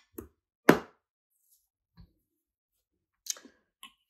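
A glass candle jar handled by hand: one sharp click or knock under a second in, then a faint tap and a couple of small clicks near the end.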